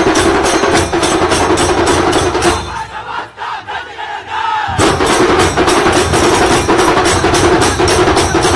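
A procession drum troupe, dhol and tasha, playing a fast, loud, even beat. About two and a half seconds in the drums stop and the crowd shouts together; the drumming comes back in sharply just before five seconds.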